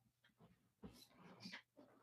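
Near silence: room tone, with a few faint, brief sounds around the middle.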